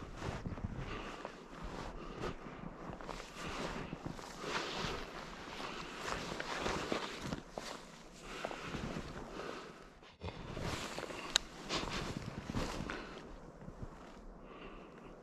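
Footsteps crunching through snow at an uneven pace, then rustling of gear with one sharp click as a backpack is taken off.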